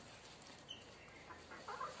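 Young chickens calling faintly, a few short clucks and peeps while they feed on grain.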